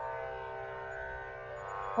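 Steady backing drone of several held tones under a Hindu mantra chant, quiet and unchanging.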